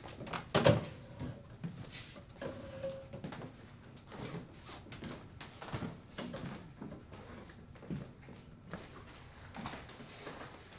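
A chair pushed back with a loud knock and a short creak as someone stands up, then footsteps and small knocks across a wooden floor.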